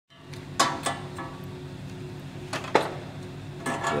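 Cans being handled on a workbench: sharp clinks and knocks in two pairs about two seconds apart, over a steady low hum. A voice starts speaking near the end.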